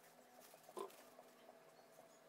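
Paper tissue wiping a computer motherboard: one brief squeak a little under a second in, with faint light ticks around it and otherwise near silence.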